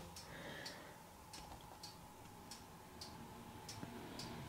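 Faint, regular ticking, a little under two ticks a second, against a quiet room.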